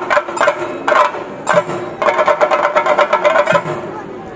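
Chenda drums with ilathalam (bronze hand cymbals) playing the theyyam rhythm: a few strikes about half a second apart, then a fast run of ringing strikes from about halfway through that stops shortly before the end.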